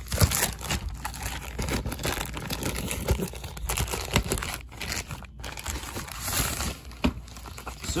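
A packaging bag being torn open and crumpled by hand, giving a continuous run of crinkling and crackling.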